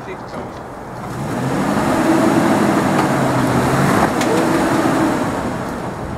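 Nissan Xterra's 4.0-litre V6 revving under load as the SUV is driven forward in a muddy rut: the engine note rises about a second in, holds steady for about three seconds, then eases off near the end.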